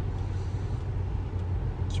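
Steady low rumble of a car's engine and tyres on the road, heard inside the moving car's cabin.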